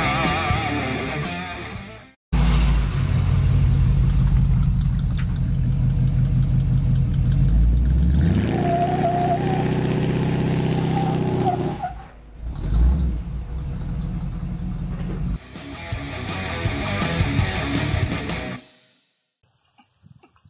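Heavy-metal guitar music that cuts off about two seconds in. Then a Chevrolet squarebody pickup's engine is heard at the exhaust: it runs with a steady low note and revs up about eight seconds in, in several short cut segments.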